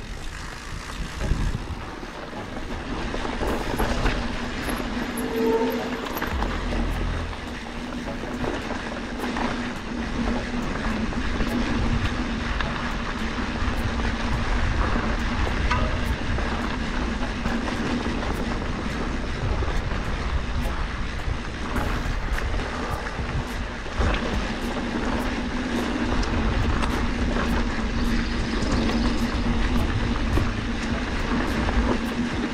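Norco Fluid FS A2 mountain bike rolling over dirt singletrack: steady tyre and trail noise with frequent rattles and knocks from the bike over bumps, under a steady low hum.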